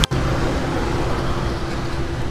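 Steady roadside traffic noise, a continuous rush of vehicles on a main road heard from the verge, after a brief dropout at the very start.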